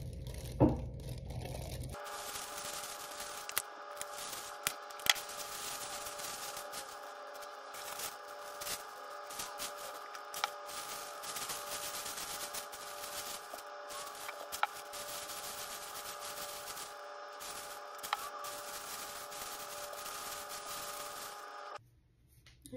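A plastic bag over a hand rubbing and scrunching through hair as dye is worked in, with scattered small clicks. A steady hum of several tones runs underneath from about two seconds in and cuts off just before the end.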